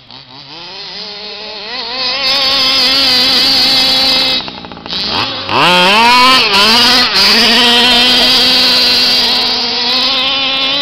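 HPI Baja 5B 1:5-scale RC buggy's small two-stroke petrol engine revving up over the first two seconds and running at high revs. About four and a half seconds in it drops off the throttle for a moment, then revs back up sharply and holds high revs again.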